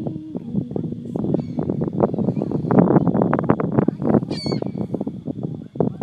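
Dense rustling and crackling on a phone microphone held close, with one high, wavering gull call about four seconds in.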